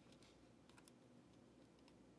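Near silence, with a few faint clicks and rustles of a trading card and its plastic sleeve and rigid top-loader being handled.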